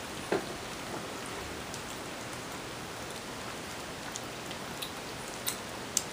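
Several kittens eating together from one dish: scattered small clicks of chewing against a steady hiss, the sharpest click about a third of a second in.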